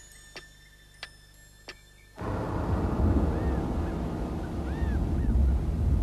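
A clock ticking steadily, about one tick every two-thirds of a second. About two seconds in, it cuts to a much louder steady low rumble like wind, with a few faint short chirps over it.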